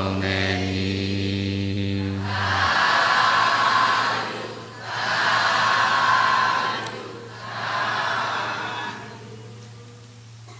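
A group of voices doing Buddhist chanting holds a long low note that stops about two and a half seconds in. Three drawn-out calls from many voices together follow, each about two seconds long, the last one softer.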